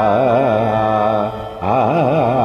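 Man singing a Carnatic raga alapana in Hindolam, pitched to A, holding open vowel phrases with wide, wavering gamaka oscillations. A brief breath break comes a little past the middle before the next phrase begins, over a faint steady drone.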